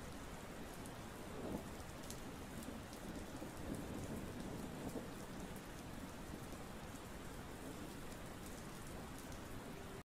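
Faint, steady hiss like falling rain, with a low rumble underneath.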